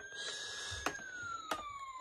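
Plastic toys being handled, with two sharp clicks about a second and a second and a half in, under a faint, thin whistle-like tone that slowly falls in pitch.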